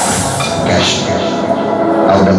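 A loud, rushing, rumbling sound effect played through the stage sound system between songs of a dance mix; its hiss drops away about half a second in.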